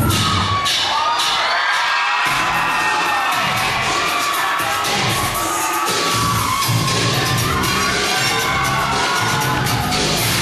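Audience cheering and screaming, many voices shrieking at once, over a dance track with a steady bass beat.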